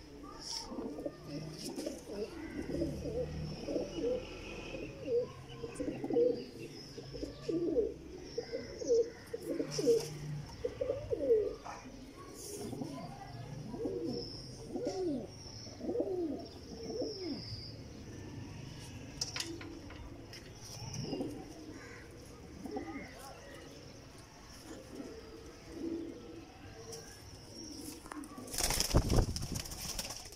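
Sialkoti high-flyer pigeons cooing over and over in a wire-mesh loft, the coos thick at first and thinning out later. Near the end comes a loud, brief rush of noise.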